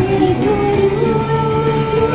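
A woman singing an anime song into a microphone over a pop-rock backing track, holding one long note through most of it.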